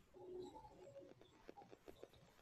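Near silence, with faint bird cooing in the background.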